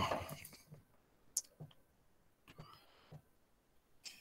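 A few faint, scattered computer mouse clicks as the user tries to get a frozen program to respond.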